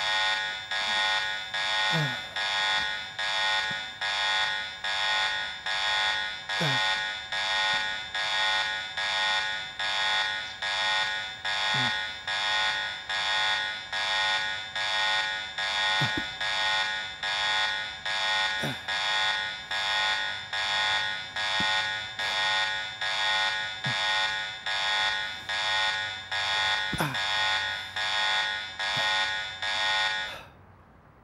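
Loud electronic alarm beeping in a steady pattern that repeats about once a second, a high, shrill multi-tone sound that cuts off suddenly at the end.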